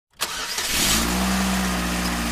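A car engine sound effect: a noisy start that settles into a steady engine note.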